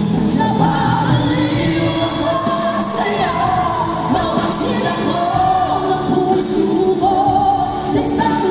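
Live pop-rock band playing with several female singers singing the melody together, loud and steady.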